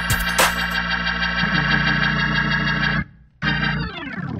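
Hammond-style drawbar organ playing a gospel 'funky church' passage: sustained chords over a held pedal bass, with a short stab about half a second in. The chord stops about three seconds in, then a last chord slides down in pitch and fades.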